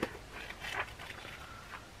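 Faint rustling and soft handling sounds of a paperback book being opened in the hands, a few light scuffs in the first second.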